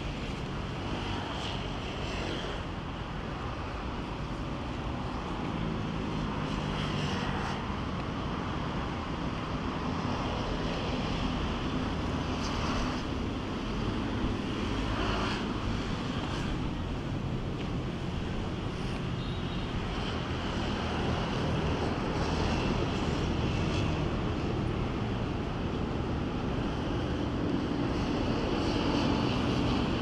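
A low engine drone over steady outdoor noise, its pitch shifting slowly and growing a little louder near the end.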